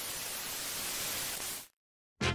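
Television static: a steady, even hiss of white noise that cuts off suddenly shortly before the end.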